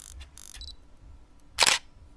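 Camera shutter sound effect: a few softer clicks and short noises, then one loud shutter click about a second and a half in.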